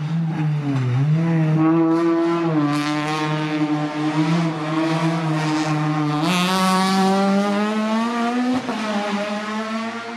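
Renault Twingo rally car's four-cylinder engine running at high revs as it takes a corner. Its note holds steady, dipping and recovering early on, then stepping up in pitch about six seconds in and again near the end.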